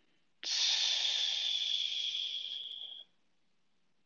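A woman's long exhale pushed out through the teeth as a 'shh', emptying the lungs in a breathing exercise. It starts about half a second in, slowly fades and stops about three seconds in.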